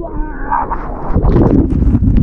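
Ocean wave breaking over a swimmer, its water churning and washing over the microphone in a loud, rumbling rush, with a short muffled cry from the swimmer near the start.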